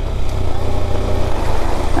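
KTM 390 Adventure's single-cylinder engine running steadily as the motorcycle is ridden along a loose gravel track.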